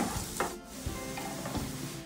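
Minced garlic sizzling in olive oil in a nonstick frying pan as a wooden spoon stirs it.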